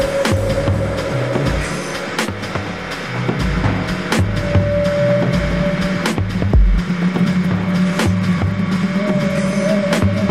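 Percussive techno mixed live by a DJ. Sharp clicks and hits ride over a pulsing bass line, and a held synth tone comes in about four seconds in and again near the end.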